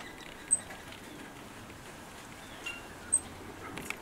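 Small birds chirping sparsely outdoors: two short, high chirps stand out, one about half a second in and one about three seconds in, over a faint steady background hiss.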